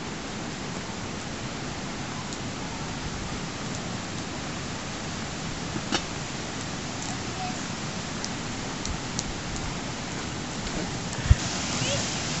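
Steady rushing hiss with a few faint clicks. A sharper knock about six seconds in as a cooking pot is set down on the campfire, and a low thump near the end.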